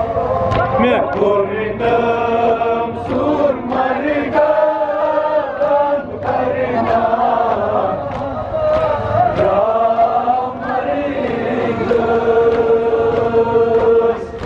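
A Kashmiri noha, a male voice chanting a mourning lament through a loudspeaker, with regular sharp slaps of mourners' hands beating their chests in time.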